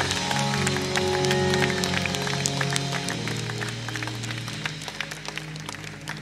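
Soft background music of sustained low chords. The chord shifts about halfway through and the music slowly fades. Scattered hand claps are heard over it.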